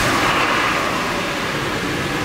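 Steady rushing noise of a vehicle running, with no clear engine note.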